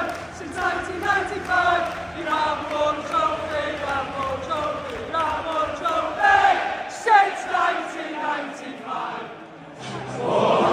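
Football stadium crowd singing a chant together in a melodic, rising and falling line. The singing dips briefly near the end, then a fuller, louder massed singing starts.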